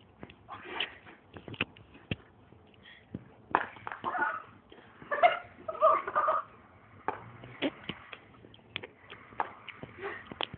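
Indistinct voices talking, with a few short, sharp clicks scattered through.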